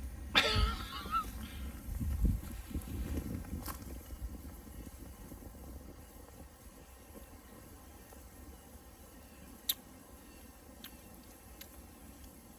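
Rustling and knocking handling noise as a beer can is passed from hand to hand, with a brief voiced exclamation at the start. Then it goes quiet, broken by a sharp click near the end.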